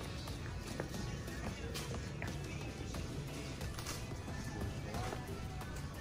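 Background music over the general noise of a busy shop, with footsteps on the floor.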